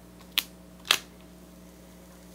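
Two short sharp clicks about half a second apart, the second louder, from hands handling a sheet of clear plastic transfer tape on a wooden sign.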